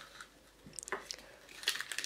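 Soft handling noises of a plastic surprise-egg capsule and a small cellophane candy packet: a few light clicks and faint crinkling.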